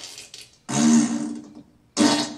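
Comic fart sounds from a film: a long one about a second in, with a low buzzing note under the noise, and another starting right at the end.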